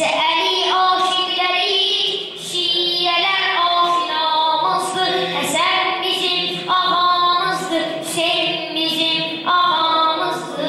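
A young boy's solo voice chanting melodically, holding long ornamented notes, with short breaths between phrases.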